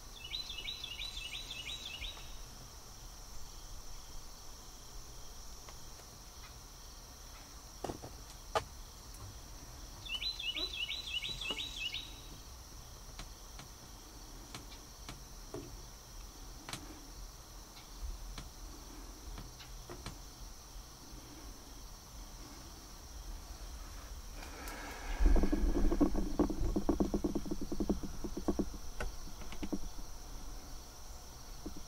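An evening insect chorus makes a steady high-pitched hum, broken by two short pulsed insect trills about ten seconds apart. A few seconds before the end comes a louder stretch of rapid, close rattling noise.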